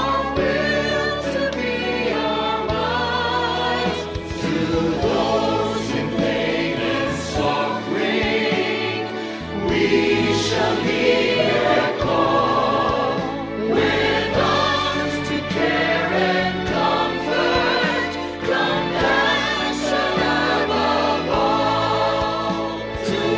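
A mixed choir of men and women singing a hymn in English with instrumental backing. The words heard include "Our will to be our might", "We shall heed their call" and "Compassion above all".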